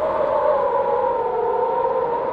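A sustained, slowly wavering wailing tone at a steady loudness.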